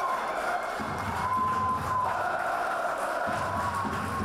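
Football stadium crowd cheering in a steady wash after a goal, with a long held tone running over it a few times.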